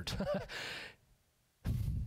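A man's voice trailing off into a breathy sigh, a short pause, then the start of a laugh near the end.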